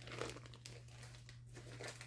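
Faint crinkling of a clear plastic zip-top bag being handled and moved aside, with a couple of slightly louder rustles.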